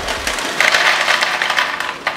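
Corn chips pouring out of a plastic bag into a plastic bowl: a dense clatter of chips hitting the bowl and each other, with the bag crinkling, growing louder about half a second in.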